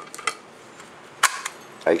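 Remington 870 shotgun trigger group being pressed into the steel receiver: a few faint metal clicks, then one sharp click a little past a second in as it seats.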